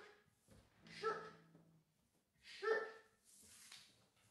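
A dog barking: two short, sharp barks about a second and a half apart.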